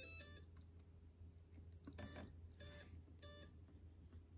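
A Spektrum Avian brushless ESC beeping through its motor as it restarts after its settings are saved. A short run of tones comes at the start, then three evenly spaced beeps about 0.6 s apart, all faint.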